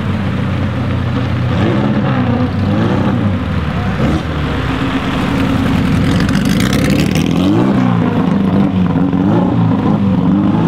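1956 Porsche 550 Spyder's 1500 cc four-cam flat-four engine running as the car drives past at low speed, its pitch rising and falling several times with the throttle. It is harshest as the car passes close, about six to seven seconds in.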